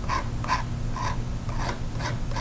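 Palette knife scraping oil paint onto a canvas board in short strokes, about two a second, over a steady low electrical hum.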